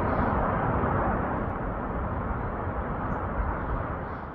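Steady outdoor rumble and hiss with no distinct events, easing slightly near the end.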